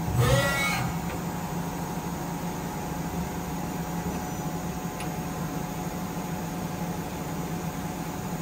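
Miyano BNE-51SY CNC lathe running with a steady machine hum. A brief rising whine near the start comes as the tool turret moves toward the sub-spindle, and there is a faint click about five seconds in.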